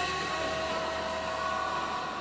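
Party music with long held notes over a steady noisy wash; no voice stands out.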